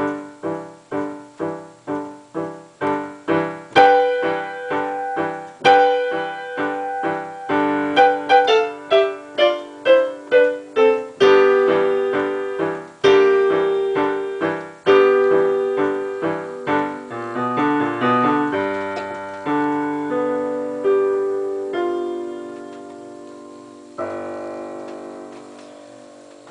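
Digital piano played with both hands in simple intervals: short detached notes at first, about two a second, then longer held notes. The notes spread out as the piece slows, and a final chord is struck about two seconds before the end and left to fade.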